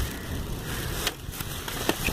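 Thin plastic bag rustling and crinkling as a hand digs through it, with a few sharp clicks of plastic VHS cassette cases knocking together, over a steady low rumble.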